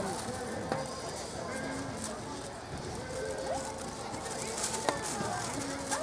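Indistinct background chatter of several people talking outdoors, with a sharp click about five seconds in.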